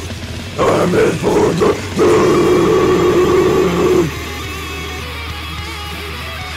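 Death metal: deep growled vocals over distorted electric guitars. They break off about four seconds in, and a quieter electric guitar line with wavering, bent notes carries on.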